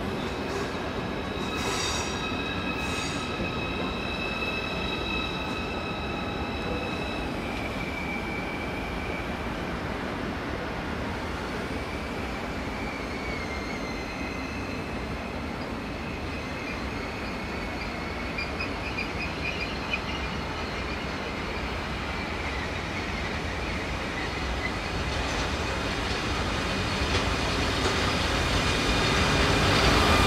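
Trains moving slowly through a station: a steady rolling rumble with drawn-out, high wheel squeals that come and go. Near the end the sound grows louder as an SBB Re 460 electric locomotive hauling the Nightjet draws close.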